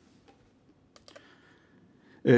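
Near silence, with a few faint computer clicks about a second in, from keyboard or mouse use at a desk.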